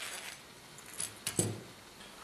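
A few light metallic clinks and a soft knock a little over a second in, as a metal lead screw carrying a brass nut and a 3D-printed mount is set down on a cloth-covered table.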